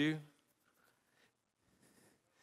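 A man's voice finishing a word through a headset microphone, then a pause of near silence with faint room tone.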